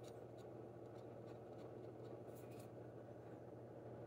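Near silence: room tone with a steady low hum and a few faint light ticks.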